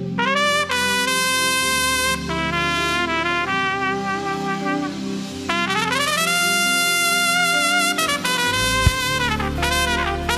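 Solo trumpet playing a slow worship melody, scooping up into its notes. About halfway through it slides upward into a long held note, then plays shorter phrases. Steady low held chords back it.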